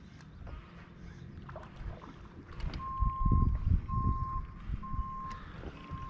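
An electronic beeper sounding four short beeps of one steady pitch, about one a second, starting about three seconds in, over low rumbling thumps.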